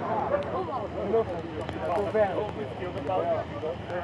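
People talking, with a tractor engine running underneath.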